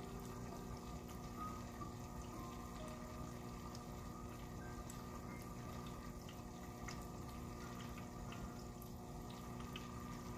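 Small tabletop resin fountain running: a thin stream of water trickling from a toad-figure spout over a glass ball into its basin, with small drips and splashes, over a steady low hum.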